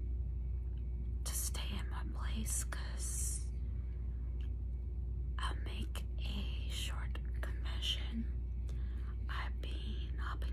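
A woman whispering, in two stretches with a pause of about two seconds between, over a steady low hum.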